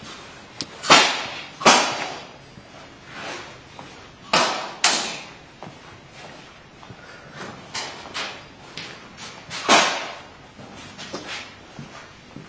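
Gas-powered game guns firing in a large, echoing hall: five loud, sharp shots, two close pairs early and one more near the end, each ringing off briefly, with fainter knocks in between.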